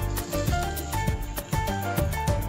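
Background music with a steady beat, bass and a melody line.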